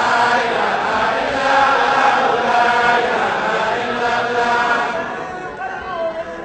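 A large congregation chanting dhikr together, many voices in unison, easing off somewhat near the end.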